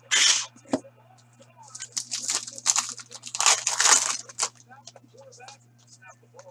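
Trading card pack wrappers being torn open and crinkled: one loud rip at the very start, then a couple of seconds of repeated ripping and rustling in the middle.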